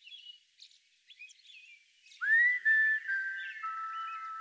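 Faint birdsong chirps, then about two seconds in a whistled tune begins. It is a note that slides up and is held, then steps down through lower held notes as the opening of a slow melody.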